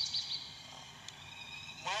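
A bird singing a rapid series of short, high, downward-sliding notes, about six a second, that stops about half a second in; faint steady high tones go on after it.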